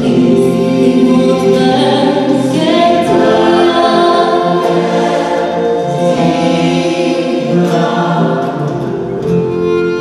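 Gospel choir singing in harmony behind a female soloist, accompanied by a live band, in a slow sustained passage.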